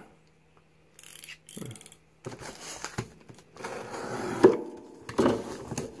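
Utility knife cutting open a padded plastic mailer: irregular scraping and rustling of blade and plastic with a few sharp clicks, starting about a second in.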